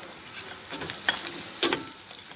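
Metal slotted spoon scraping and clinking against a stainless steel pan as frying onions are stirred, over a faint sizzle. A few sharp clinks come through, the loudest about a second and a half in.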